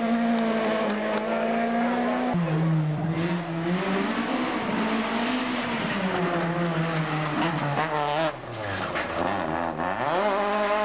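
Two-litre kit-car rally car engines revving hard, their pitch stepping and gliding up and down with gear changes. The sound changes abruptly about two seconds in as another car takes over, and near the end the revs drop and then climb again.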